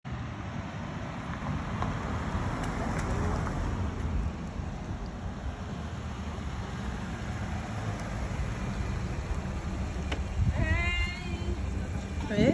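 A car driving slowly up the street and pulling alongside, a low steady rumble mixed with wind on the microphone. A short voice is heard near the end.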